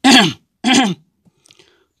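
A person's voice making two short, loud vocal sounds about half a second apart in the first second, each falling in pitch.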